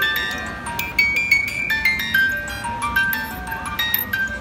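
A music box shaped like a vintage sewing machine, playing a tune: a steady melody of plucked, ringing high metal notes, several a second, each fading after it sounds.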